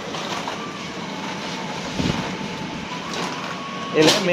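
Steady background hum and hiss of a grocery store's air conditioning and refrigerated cases, with a faint thin steady whine through most of it.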